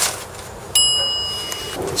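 A single bright, high bell ding that starts suddenly about three quarters of a second in and rings steadily for about a second before cutting off.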